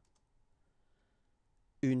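Near silence in a pause between spoken phrases, then a man's voice starts again near the end.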